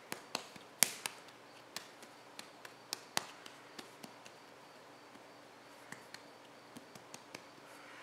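Hands patting and turning a hollow clay rattle form: a scatter of faint soft taps, with two sharper ones about one and three seconds in, growing sparser in the second half.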